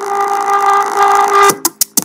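Steady electronic chord from a YouTube video's channel-logo intro, playing back on a computer, cut off about one and a half seconds in. It is followed by three very short snippets of sound as the video is skipped ahead.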